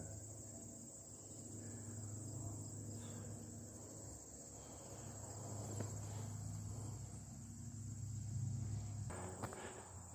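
Steady high-pitched chorus of field insects. A low, steady rumble lies underneath and stops about a second before the end.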